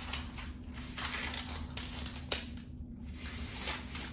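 Adhesive-backed Velcro hook strip being peeled from its backing and pressed onto the wall by hand: scattered crackling rustles and ticks, with one sharp click a little over two seconds in.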